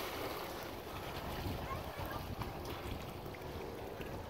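Lake water lapping and sloshing close to the microphone, with wind noise on the microphone.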